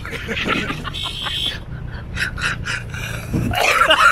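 A man laughing heartily, a run of short breathy bursts of laughter, over a steady low hum.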